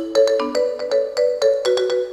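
Live Congolese rumba band music, led by an electronic keyboard playing a quick run of notes in two-note chords, roughly six notes a second.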